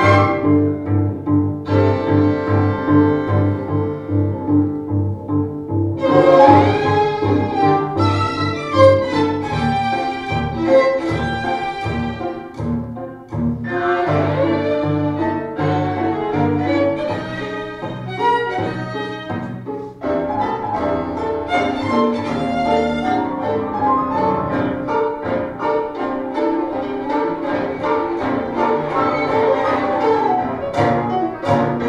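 A string ensemble of violins and cello playing a film soundtrack, with a steady rhythmic pulse in the low strings under moving upper lines.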